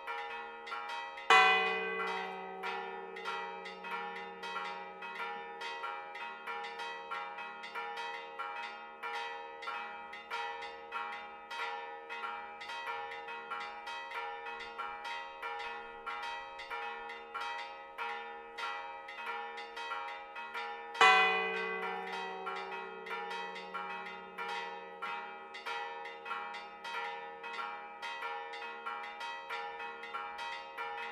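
A four-bell church peal: the smaller bells are struck in a rapid, continuous clangour. The largest bell, cast in 1677 and tuned to G flat, booms out twice, about twenty seconds apart, as the loudest strikes, each left ringing.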